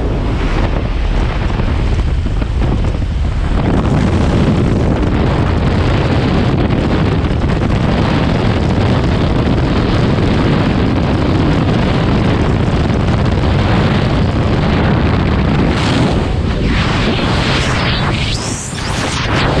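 Loud, steady wind rush buffeting a helmet camera's microphone in the slipstream at a jump plane's open door, mixed with the aircraft's engine noise. Near the end the sound changes as the jumpers exit into freefall wind.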